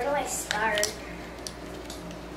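A short vocal sound, under a second, as a person bites into a burger, followed by a few faint wet mouth clicks of chewing.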